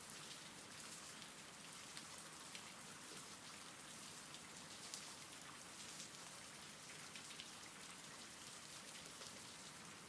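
Faint, steady rain: a soft hiss with the light patter of drops.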